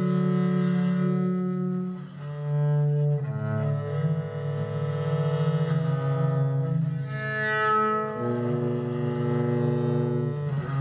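Viola da gamba bowed in a slow solo passage of French Baroque music: low notes held a second or more, often two or three sounding together as chords, with the harmony changing every few seconds.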